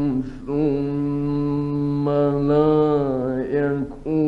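A man reciting the Quran in a melodic, chanted style: after a short breath near the start he holds one long ornamented note, its pitch lifting slightly partway through. The recording dates from the 1950s.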